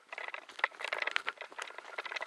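Light, irregular crackling and rustling: movement and handling noise over dry forest-floor debris and undergrowth.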